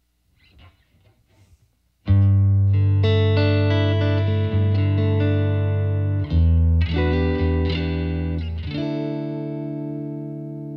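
Fender American Elite Telecaster played clean on its Noiseless single-coil neck pickup through an amp. After a quiet start, a chord rings out about two seconds in. Several more chords and notes follow, each left to sustain.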